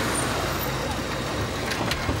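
A car's engine running and its tyres rolling as a sedan pulls up slowly and stops, with two short sharp sounds near the end.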